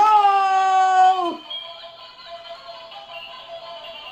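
Light-up toy spinning tops spinning on a tile floor and playing their tinny electronic tunes, which come in after a long drawn-out shout of 'go'.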